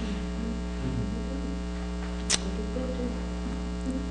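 Steady electrical mains hum with a long stack of overtones on the recording, heard alone in a pause between words, with a single short click a little past halfway.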